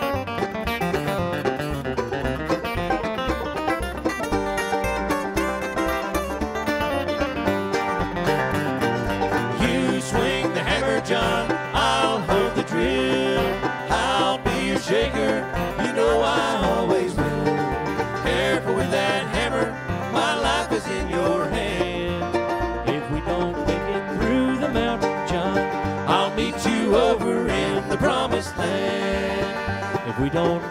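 Acoustic bluegrass band playing an instrumental break between sung choruses: banjo, mandolin, acoustic guitar, fiddle and upright bass, with quick picked notes and sliding melody lines from about ten seconds in.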